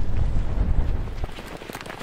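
Wind buffeting the microphone: a loud, low rumble that eases off after about a second.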